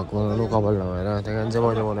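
A man's voice in a low, drawn-out sing-song, with no clear words.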